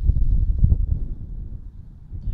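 Wind buffeting the microphone: a loud low rumble that starts suddenly and eases off toward the end.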